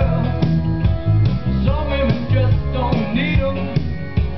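Seeburg DS-160 stereo jukebox playing a rock and roll record: a singer over guitar and strong bass.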